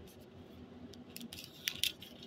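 Handling noise: a few short, crisp clicks and light rustles, bunched in the second half and loudest near the end, over a faint steady room hum.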